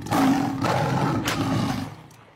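A loud, rough roar laid over the picture as a sound effect. It starts abruptly and dies away just before the end.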